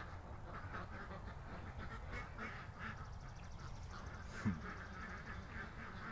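Ducks quacking softly, short calls repeating a few times a second, with one louder, short sound that falls in pitch about four and a half seconds in.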